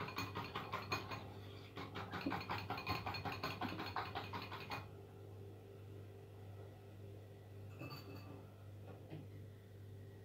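Beaten eggs being whisked in a ceramic bowl, the whisk clicking rapidly and evenly against the bowl's side; the whisking stops about five seconds in.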